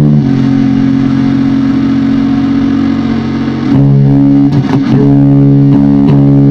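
Heavily distorted electric guitar played loud through amp cabinets: a low chord is struck and left to ring for about three and a half seconds, then struck again several times near the end.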